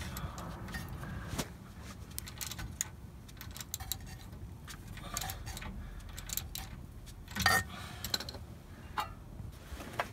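Hand ratchet and metal tools working the bolts of a steel rear differential cover: scattered metallic clicks and clinks, with a louder clatter about three-quarters of the way through.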